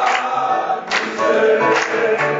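A church congregation singing a gospel song together, accompanied by piano, with hands clapping on the beat about once a second.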